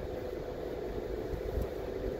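Steady cabin noise of a car rolling slowly: a low rumble under an even hum.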